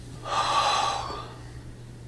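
A woman's single audible gasp, starting about a quarter of a second in and fading away within about a second.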